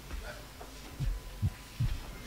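Low, dull thuds of footsteps on a stage floor, three in quick succession in the second half, carried by the stage microphone over a faint hum.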